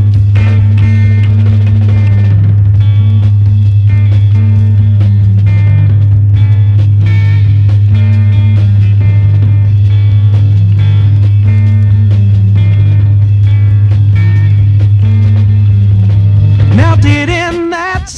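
A loud, steady low test tone, pitched near 100 cycles, held unbroken over a rock band with a stepping bass line, drums and guitar. The tone stops about a second before the end and a singing voice comes in.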